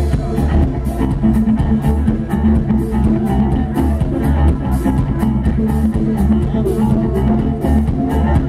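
A live band playing: electric guitars, keyboards, bass and a drum kit keeping a steady beat, heavy in the bass, recorded from within the crowd.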